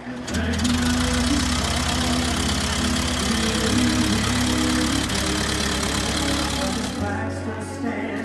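A vintage wooden-bodied truck's engine running with an even, rapid low pulsing and a loud hiss, under a song with singing. The engine sound starts just after the beginning and stops about a second before the end, leaving the song.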